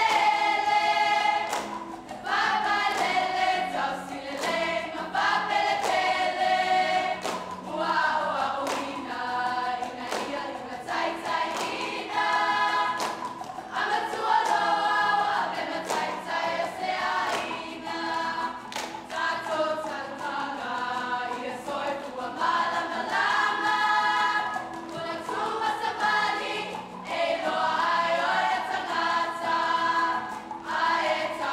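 A group of female voices singing a Samoan siva song together in sung phrases, accompanied by strummed guitars.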